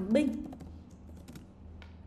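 A short word typed on a computer keyboard: a few faint key clicks.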